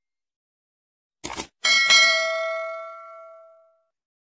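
A short click sound effect, then a bright bell ding with several ringing tones that fades away over about two seconds: the click-and-notification-bell effect of a subscribe-button animation.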